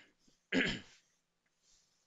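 A man clears his throat once, briefly, about half a second in, followed by a faint breath.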